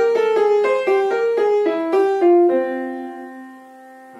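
Yamaha piano played with the right hand: a quick single-note jazz lick of about a dozen notes in F minor, ending about two and a half seconds in on a held note that rings on and fades away. A few soft notes follow near the end.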